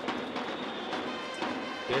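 Ballpark crowd noise with music from the stands playing over it at a moderate level.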